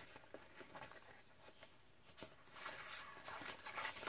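Soft rustling of paper sticker sheets being leafed through by hand, with a few light ticks, quietest in the middle and a little louder near the end.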